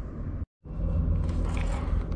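Steady low background rumble of room noise, cut off by a brief dead-silent gap about half a second in and coming back louder after it.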